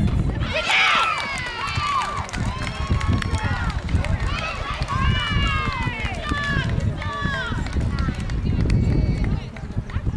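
Several high-pitched voices shouting and calling out, overlapping, over a steady low rumble.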